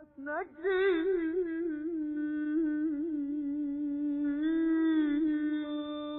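A solo voice sings a wordless Persian classical avaz phrase in Chahargah on a held vowel. It opens with an upward swoop, then rapid wavering tahrir-style ornaments, and settles on a long held note. No accompaniment is heard, and the old recording is muffled in the highs.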